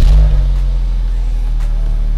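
Car engine just started: it flares briefly as it catches, then settles into a steady idle.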